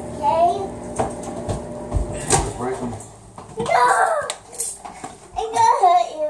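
Children's voices in short bursts of chatter, with a few sharp knocks between them.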